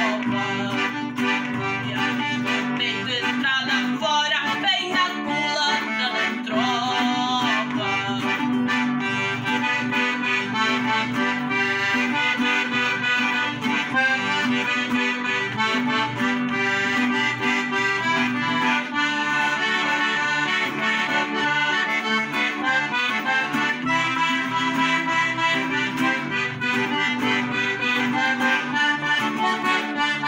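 Red piano accordion playing a tune with an acoustic guitar accompanying. A boy's singing voice carries over the first several seconds, then the accordion carries the melody alone.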